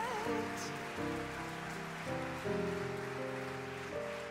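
Concert grand piano playing slow jazz-ballad chords in a pause between sung phrases, a held vibrato note from the singer fading out at the very start.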